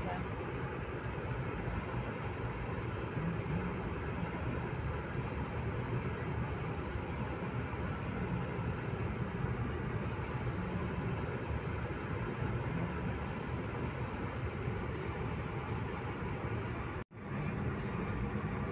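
Steady road and engine noise heard inside a moving car's cabin. The sound drops out abruptly for a moment near the end.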